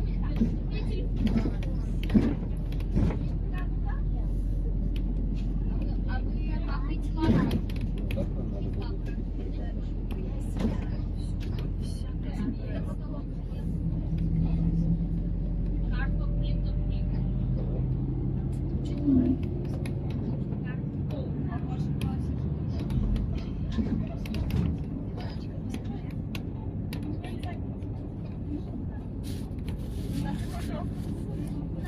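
Inside the cabin of a moving MAZ-203 low-floor city bus: a steady engine and road drone with scattered rattles and knocks from the body and fittings. The engine note shifts around the middle, and the deepest hum drops away a little past two-thirds of the way through.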